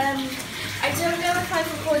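A girl talking, over the steady rush of a bath being filled from the tap.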